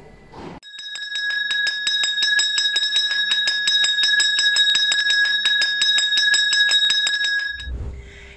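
A brass school handbell rung rapidly and continuously, about six or seven strokes a second over a steady bright ring. It stops abruptly shortly before the end. It is the ceremonial 'last bell' marking the end of school.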